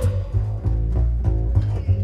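Live band music in a breakdown: the drums and horns drop out, leaving a low bass line of short stepped notes with light plucked strings above it.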